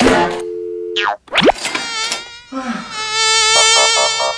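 Cartoon-style comedy sound effects: a brief steady two-note tone, a quick rising swish about a second and a half in, then a loud, high, wobbling buzz like a fly or mosquito that fills the second half.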